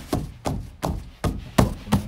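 A hand patting the stretched fabric bed of a camping cot: about six flat slaps in a steady rhythm, roughly three a second.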